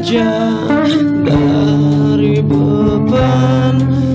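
Rock band playing an instrumental passage between vocal lines: sustained guitar chords that change every second or so over bass, with occasional drum hits. It is a live rehearsal recording made on a tape recorder.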